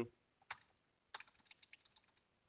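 Faint clicks of a computer mouse and keyboard: one click about half a second in, then a quick run of light clicks.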